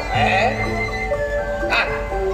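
Gamelan accompaniment: metal-keyed instruments sound a melody of held, ringing notes, with a sharp drum-like stroke near the end. A voice trails off briefly at the start.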